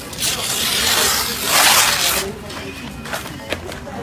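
Printed wrapping paper and cardboard being torn open by a toddler's hands: a loud papery ripping that lasts about two seconds, then quieter rustling.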